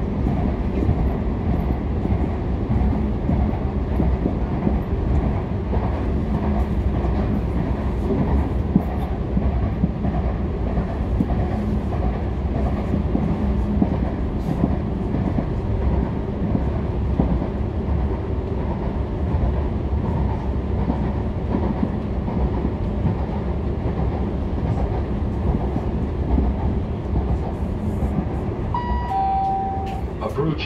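Steady low rumble of a moving passenger train heard from inside the carriage, with a brief falling two-note tone near the end.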